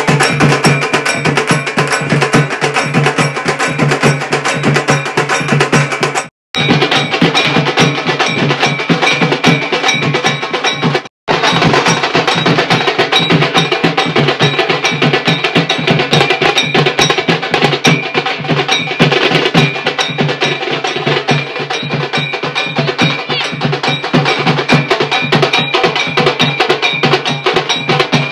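Music with a fast, steady percussion beat over sustained tones. It cuts out completely for a moment twice, about six and eleven seconds in.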